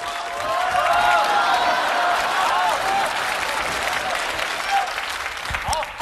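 Studio audience applauding, with shouts from the crowd over the clapping in the first few seconds.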